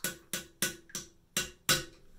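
A hand razor scraping over the scalp in six short, quick strokes, each a sharp rasp that dies away fast; the last, near the end, is the loudest.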